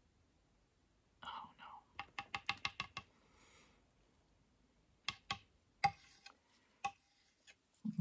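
Faint light clicks and taps from a metal palette knife working acrylic paint on a wooden lazy susan: a quick run of about eight a little over a second in, then a few scattered ones later.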